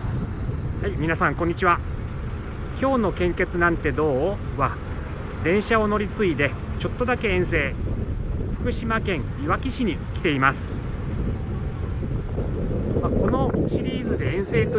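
Mostly a man's speech, over a steady low outdoor rumble of traffic and wind.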